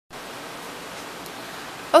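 A steady, even hiss with no rhythm or pitch, cut off near the end as a woman starts speaking.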